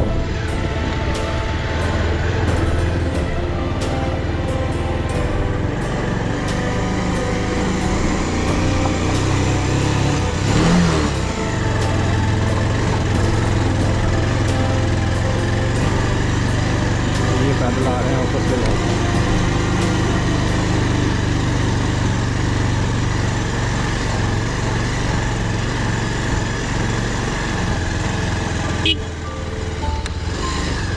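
Motorcycle engine running steadily as the bike rides a rough dirt mountain road, under background music with a steady beat.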